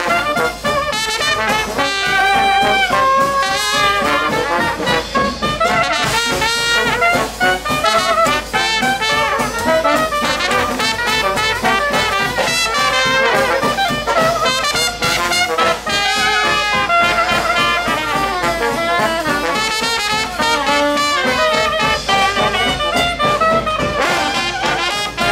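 A traditional jazz band plays an instrumental ensemble passage. Cornet, soprano saxophone and trombone play together in front, over a rhythm section of guitar, banjo, string bass and drums.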